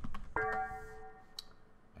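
A few computer keyboard key clicks, then a single ringing musical note that starts sharply and fades out over about a second.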